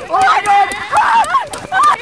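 A string of short, high-pitched panicked screams that rise and fall, over the knocks of running footsteps and a jostled handheld camera.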